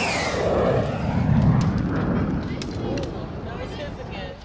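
A crowd of children and adults shouting and cheering together as paper airplanes are launched, swelling about a second in and dying down toward the end. It opens with a high sound falling in pitch.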